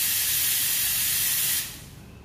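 La Spaziale Mini Vivaldi II espresso machine's steam wand venting steam in a steady, loud hiss while the steam function is tested, dying away near the end.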